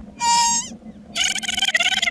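Velociraptor call sound effects: a short, high call that drops in pitch at its end, then a longer call starting about a second in.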